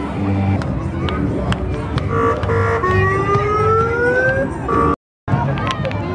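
Street parade sound: music and crowd voices, with scattered sharp clicks and, about three seconds in, a siren-like tone rising slowly in pitch for about a second and a half. The sound cuts out for a moment near the end.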